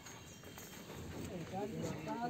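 Quiet outdoor ambience with a few faint high chirps, then a voice starting in the last half-second.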